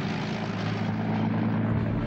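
Motor engines droning steadily under a rushing noise, with a low hum throughout.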